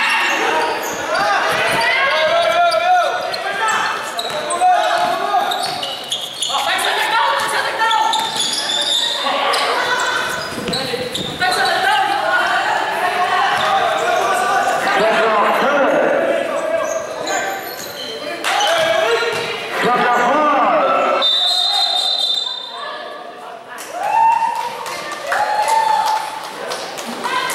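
Basketball game in a large echoing hall: players and onlookers shouting and calling out almost without a break, with the ball bouncing on the court.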